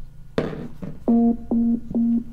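Tronsmart Studio Bluetooth speaker being switched on: a click, then from about a second in a run of short, evenly spaced low beeps from the speaker, about two to three a second.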